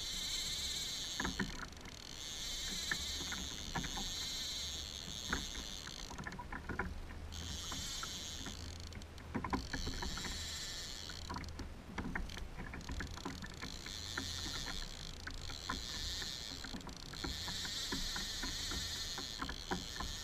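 Baitcasting-type fishing reel clicking irregularly while a hooked king salmon is played on a bent rod. A high hiss comes and goes in long stretches, over a low rumble of wind and water.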